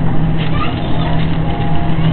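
Store background noise: a steady low hum under a dense wash of noise, with faint distant voices.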